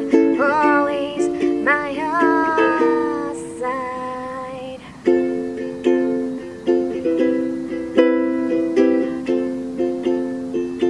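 Acoustic ukulele strummed in chords, with a sung vocal line gliding in pitch over it for the first three seconds or so. The playing thins to a single ringing chord that dies away about four to five seconds in, then even strumming strokes pick up again.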